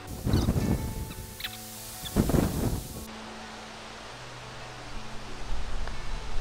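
Background music with steady held notes. Two short gusts of wind buffet the microphone, one just after the start and one about two seconds in.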